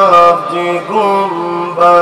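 A man's voice chanting a religious recitation, loud, in long held notes that step from pitch to pitch about every half second to a second.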